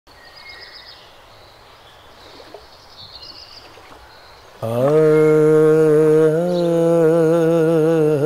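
Faint outdoor ambience with birds chirping, then about halfway through a man's voice begins a long sung 'aa', the opening of a naat, held on one pitch and wavering slightly near the end.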